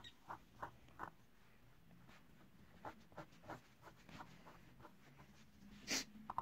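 A stylus scraping the black coating off a scratch-art sheet in a string of short, irregular strokes. The scratches are faint, and the loudest comes near the end.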